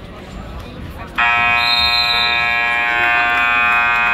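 Gym scoreboard buzzer sounding one long, steady, loud blast that starts suddenly about a second in, signalling the end of a wrestling period.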